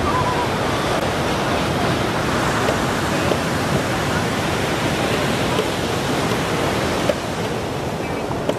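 Ocean surf breaking and washing up the shallows, a steady rush of water.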